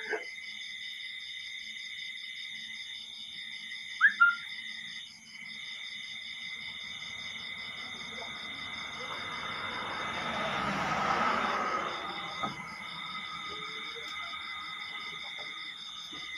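Night insects trilling steadily in several high, fast-pulsing tones. A brief sharp sound comes about four seconds in, and a swell of rustling noise rises and fades between about nine and twelve seconds.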